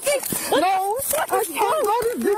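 A woman's high-pitched screaming and wailing: a quick string of wavering cries that rise and fall in pitch, with no clear words.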